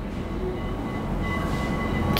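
A steady low rumble of background noise with faint, thin steady tones above it.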